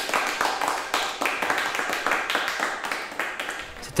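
A crowd applauding, a dense patter of many hands clapping that eases off near the end.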